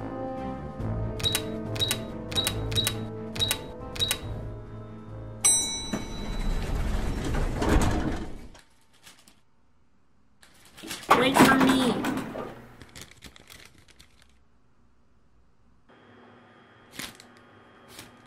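Electronic keypad beeping: a quick run of short, high beeps, one for each button pressed, over background music. A sudden louder sound comes in about five seconds later, and a brief loud burst follows near the middle.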